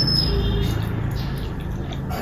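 Noodles being slurped and chewed with a brief high squeak of suction near the start, over a steady low hum.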